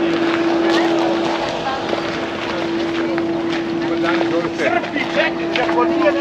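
A motor running with a steady hum on one held pitch, under the chatter of people talking. The voices grow busier in the second half.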